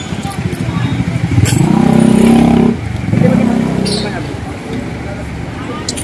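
A motor vehicle engine passing close by on a busy street, building to its loudest about two seconds in and then fading, over street voices.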